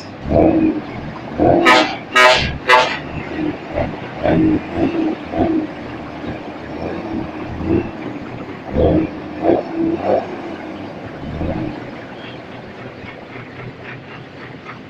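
Truck air horn giving three short sharp toots close together about two seconds in, followed by a steady outdoor din of idling trucks with scattered lower thumps and bursts that eases off near the end.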